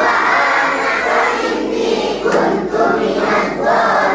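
A large crowd of children and adults chanting Arabic dhikr together in unison, a continuous swell of many voices drawn out on the invocation syllables.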